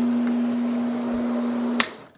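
Electric floor machine scrubbing carpet with a brush: its motor runs with a steady hum, then a sharp click near the end as it is switched off and the hum stops.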